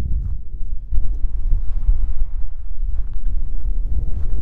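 Wind buffeting the camera microphone: a loud, uneven low rumble that gusts and eases, with a brief lull just before a second in. The windscreen on the microphone does not keep it out.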